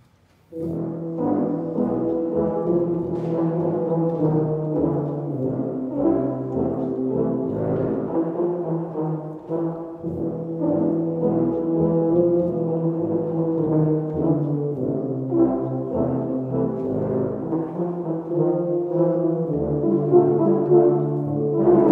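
Low brass ensemble of tubas and euphoniums starting to play about half a second in, then continuing with sustained, many-voiced chords and moving lines.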